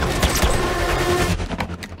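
Gunfire in an action-film sound mix: a rapid run of sharp shots that thins to a few scattered cracks and fades near the end, over a low rumble.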